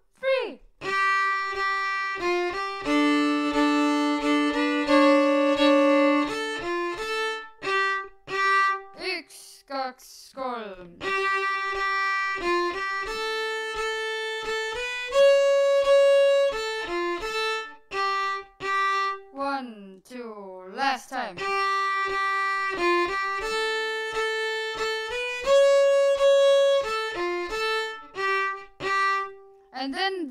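Solo fiddle playing an Estonian folk tune phrase by phrase, with short pauses between phrases and a few held two-note double stops. One phrase is played and then repeated almost exactly.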